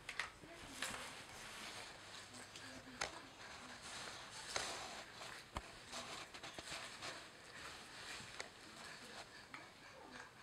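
Faint rustling with scattered light taps and clicks as a baby handles a TV remote control on a fabric play mat, with one sharper click about halfway through.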